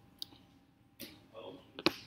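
A few short clicks from a computer's pointing device while a video's playhead is dragged back. The sharpest and loudest click comes near the end.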